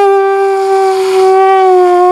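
Homemade balloon bagpipe, a balloon's stretched neck vibrating over a bottle top on a cardboard tube, sounding one loud, held reed-like note as the balloon is squeezed. The pitch sags slightly and comes back up.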